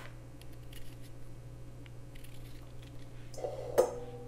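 Vegetable peeler scraping the skin off a fresh ginger root in short, light strokes, with a sharper click near the end.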